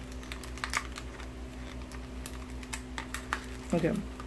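Irregular light clicks and taps of small packaged items being handled, over a steady electrical hum.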